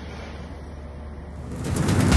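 Steady outdoor ambient noise with a low hum. About a second and a half in, a rising whoosh swells into a short music sting.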